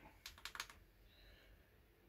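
A quick run of about five faint light clicks within the first second, like small plastic parts being handled, then near silence.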